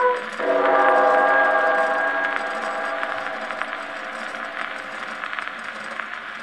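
A 1927 78 rpm shellac dance-band record played on an acoustic gramophone: the band's final chord sounds about half a second in and slowly fades away. The disc's surface crackle and ticks come through more plainly as the chord dies.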